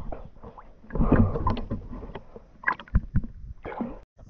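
Water sloshing and splashing close to the microphone at the water surface, in irregular bursts, loudest about a second in, with a few sharper slaps later on.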